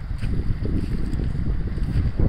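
Wind buffeting the phone's microphone in gusts, over the rush of flood water from a breached canal flowing across a field.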